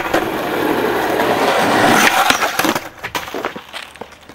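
Skateboard wheels rolling loudly on rough asphalt, then a clatter of the board and impacts about two and a half seconds in as the skater slams.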